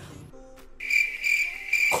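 A cricket chirping: one steady high trill that starts just under a second in and holds for about a second and a half.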